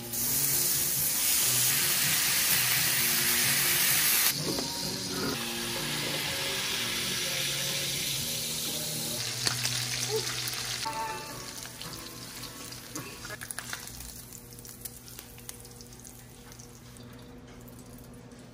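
Bacon sizzling in a cast-iron skillet as its fat renders: a loud, dense sizzle for the first four seconds, stepping down a little, then dropping about eleven seconds in to a quieter sizzle with scattered pops and crackles.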